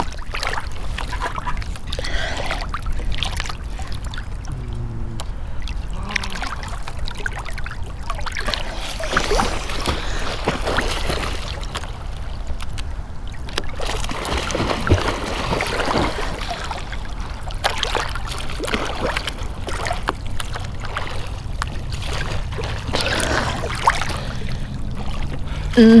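Lake water lapping and sloshing right at a camera held at the surface, over a steady low rumble, with a few louder splashy swells in the middle.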